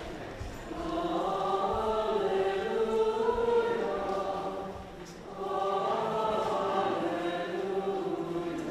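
Mixed church choir singing in held, slow-moving phrases, with a short breath about five seconds in before the next phrase.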